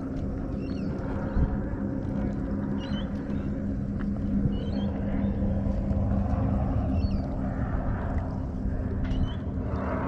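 Steady low hum of a boat engine running, over a low rumbling noise of water and air.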